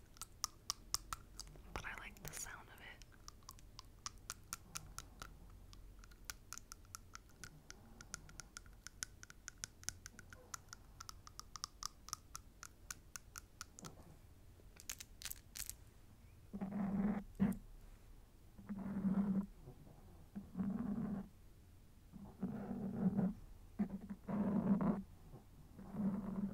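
Long artificial fingernails tapping and clicking against each other, a quick run of light clicks for about the first half, then a few sharper clicks. Soft vocal sounds come in near the end.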